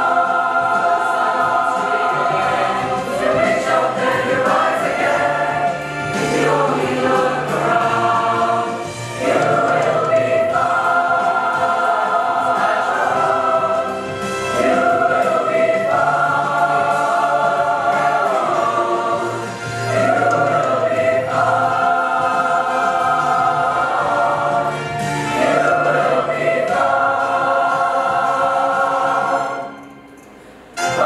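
Mixed youth choir singing in parts: sustained chords in phrases a few seconds long, with short breaths between phrases. The singing drops away briefly near the end.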